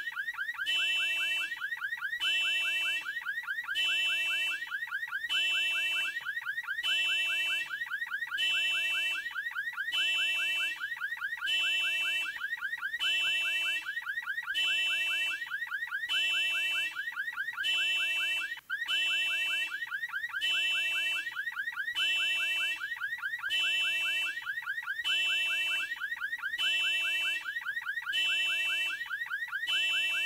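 An electronic alarm-like sound: a fast warbling tone under an evenly repeating multi-pitch beep at about one a second, with one brief dropout a little past halfway.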